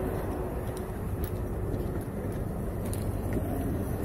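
Steady low outdoor background rumble with a few faint clicks, no distinct machine running.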